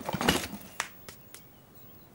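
Toys rattling and clattering in a box as someone rummages through them. The clatter is busiest in the first half second, then a few light knocks follow.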